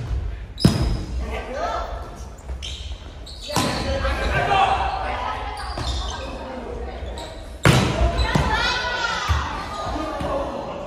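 A volleyball being hit during a rally, with sharp smacks of the ball on hands and forearms about half a second in and again near the end, echoing in a large gymnasium. Players' shouts and calls follow the hits.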